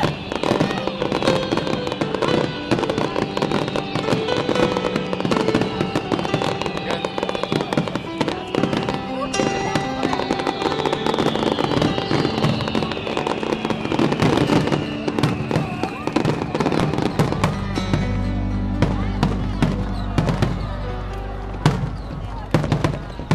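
Aerial fireworks shells bursting overhead in a dense, continuous barrage of bangs and crackling.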